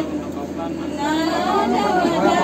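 Several people's voices talking in a crowded room, louder from about a second in.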